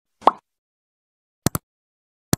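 Sound effects of a subscribe-button animation: a short pop as the button overlay appears, then a mouse-click sound, two quick ticks close together, about a second and a half in.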